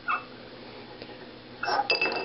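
Brass-whorled takli spindle whirling with its tip in a small ceramic bowl. It makes a faint sound just after the start, then near the end a short rattle and a clink that rings briefly against the ceramic.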